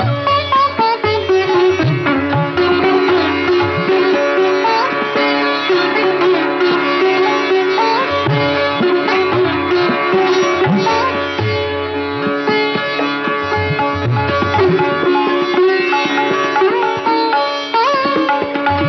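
Sitar playing a Masitkhani gat in raag Nat Bhairav: plucked melody notes, many of them sliding between pitches.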